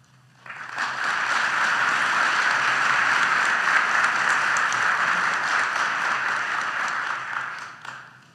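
Audience applauding. It starts about half a second in, holds steady, and fades out near the end.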